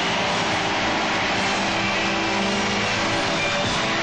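Live rock band music: a full band playing loud and steady, with held notes under strummed guitar and cymbals.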